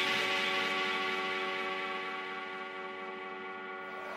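A held electronic synth chord with no drums, fading slowly: a breakdown in a house track.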